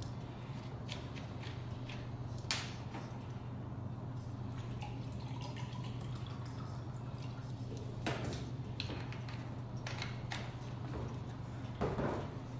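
Lemon juice poured from a bottle into a small cup, with a few sharp clicks and knocks of the bottle cap and bottles on a steel table, the first about two and a half seconds in. A steady low hum runs underneath.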